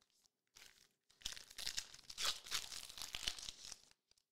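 A trading-card pack's wrapper being torn open and crinkled by hand: a dense crackling that starts about a second in and runs for about two and a half seconds.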